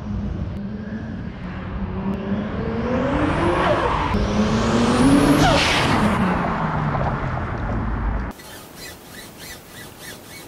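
Toyota Supra MK4's turbocharged 2JZ straight-six accelerating past: the engine note climbs in pitch and loudness to a peak about five seconds in, then drops in pitch and fades as the car drives away, cut off suddenly after about eight seconds.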